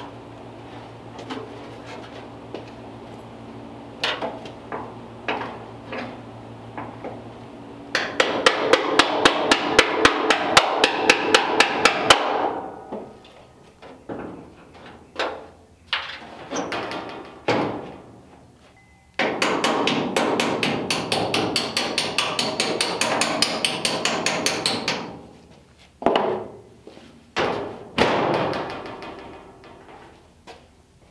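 Metal body hammer striking the steel sheet of a Ford Model A door skin, working its edges over and into shape: two fast runs of blows, several a second, with single taps between them and a few harder single strikes near the end.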